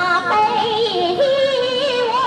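A woman singing solo into a handheld microphone, holding notes with a wide vibrato and stepping between pitches.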